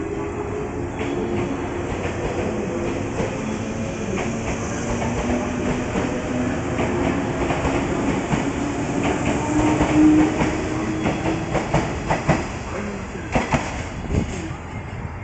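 JR West 117 series electric train pulling away from the platform. Its traction motors hum with several tones that climb in pitch as it accelerates. Wheel clicks over the rail joints grow more frequent and louder through the second half, peaking near the end as the last cars pass.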